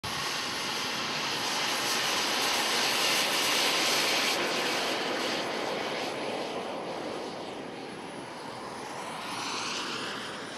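Gas turbine engine of a radio-controlled Lockheed T-33 model jet running at high thrust for takeoff: a steady jet hiss with a thin high whine. It is loudest a few seconds in and then slowly fades as the jet draws away.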